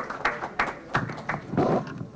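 Audience applause dying out: scattered hand claps that thin out over the first second and a half.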